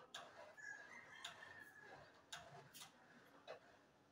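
Very faint background: a few sharp light clicks spread through, with a faint drawn-out high call lasting just over a second in the first half.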